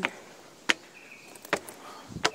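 Footsteps of someone climbing steps, sharp regular steps a little under a second apart.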